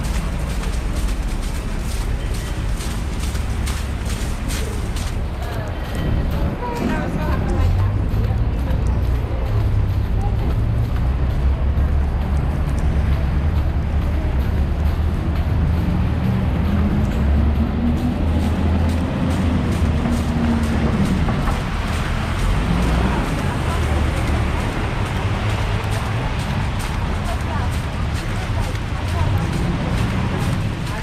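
Busy city street ambience: a steady low traffic rumble, with an engine rising and then falling in pitch as a vehicle goes by a little past the middle, and passers-by talking.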